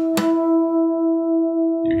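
Two natural harmonics ringing together on a Takamine acoustic guitar: the fourth harmonic of the low E string and the third harmonic of the A string, plucked right at the start and left to sustain as one steady tone. One string is slightly out of tune, so the tone wavers in loudness: beats.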